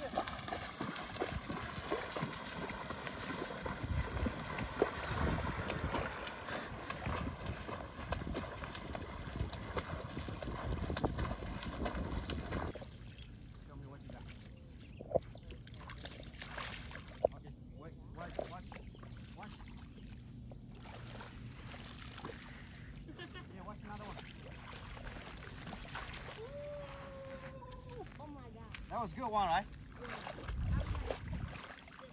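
Splashing and sloshing of shallow river water as children wade through it, with distant voices. About 13 seconds in, the sound drops suddenly to a quieter stretch of small splashes and clicks, with a short pitched call near the end.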